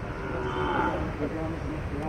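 A cow mooing.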